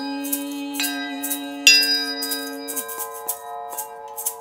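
Large hanging tubular chimes struck with a felt mallet, several tones ringing on together, with one hard strike a little under two seconds in. A woman's voice holds one long chanted note through the first three seconds.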